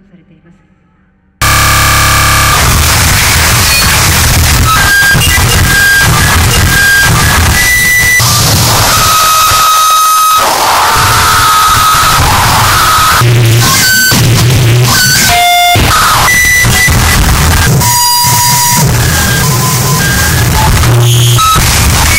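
Harsh noise music: after a faint spoken sample, a dense wall of distorted static cuts in abruptly at full loudness about a second and a half in. It runs on without letup, with brief shrill tones at shifting pitches flickering through it.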